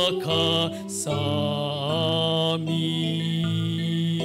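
Slow sung church music: a singing voice with instrumental accompaniment, the voice wavering in pitch for about the first two and a half seconds, then settling into long held notes.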